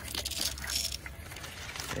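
Small hand sprayer spraying, a short hiss in the first second, then quieter.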